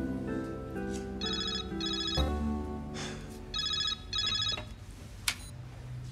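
Mobile phone ringing with a trilling double ring, two rings about two and a half seconds apart, over soft sustained background music; a single sharp click follows shortly after.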